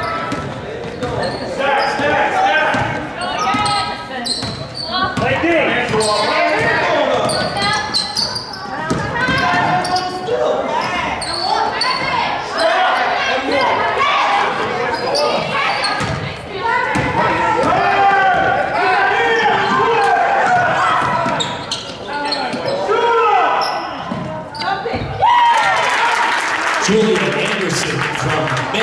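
A basketball bouncing on a gym's hardwood floor during live play, amid the voices of players and spectators in a large, echoing gym. The voices swell near the end.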